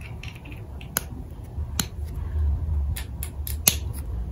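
Small metal nippers snipping plastic toy pieces off a moulded plastic runner: sharp clicks, about one a second at first, then a quicker run of four near the end, over a low steady hum.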